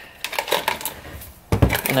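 Light clicks and taps of wiring and plastic parts being pushed into place in the back of a steering wheel hub, then a louder knock about one and a half seconds in.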